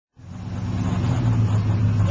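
2000 Ford F-150 engine idling: a steady low hum that fades in just after the start.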